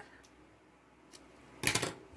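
Scissors handled over a table as yarn is cut: a short, sharp metallic clatter about one and a half seconds in, after a quiet stretch with a single faint click.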